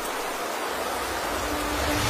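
Steady hiss of falling rain as an ambience sound effect. A faint low held tone comes in near the end.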